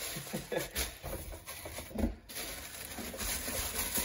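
Zip-top plastic bags full of loose LEGO pieces rustling and crinkling as they are handled and set down on a table, with scattered small clicks.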